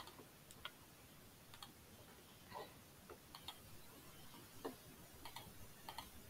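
Near silence with a handful of faint, short, irregularly spaced computer mouse clicks.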